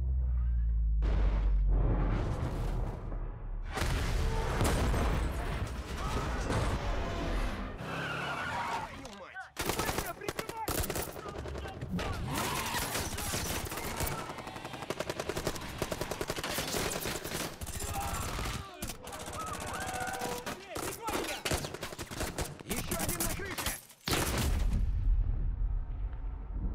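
Action-film sound mix: the low rumble of an explosion dying away in the first seconds, then long stretches of rapid automatic gunfire.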